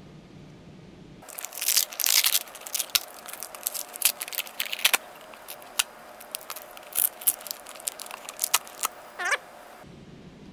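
Plastic Food Saver vacuum-bag film being peeled and torn off a cured epoxy-fiberglass frisbee, a run of crackling and crinkling. It starts about a second in and cuts off suddenly just before the end.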